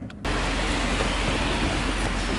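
Steady rumble and hiss of a car, heard from inside the cabin. It starts suddenly about a quarter second in.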